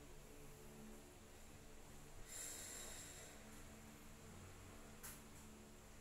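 Near silence: room tone, with one soft hiss lasting about a second, about two seconds in, and a faint click about five seconds in.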